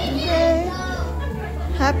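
Voices, children's among them, over background music with a steady low bass.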